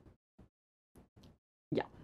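A pause in a woman's speech: near-silent gaps broken by a few faint, very short clicks, then she says "ja" near the end.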